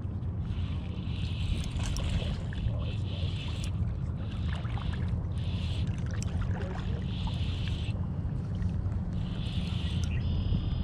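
Steady low wind noise on the microphone. Over it, a spinning reel whirs in about six short stretches of a second or so as line is cranked in, the stop-and-go retrieve of a jerkbait.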